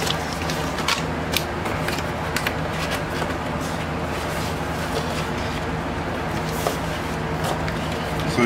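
Steady whoosh and hum of electric fans running, with a few light rustles and taps as a vinyl record in its paper inner sleeve is handled against its cardboard album jacket.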